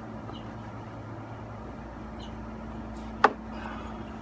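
Oil pan drain bolt being threaded back in by hand, with one sharp click about three seconds in, over a steady low hum.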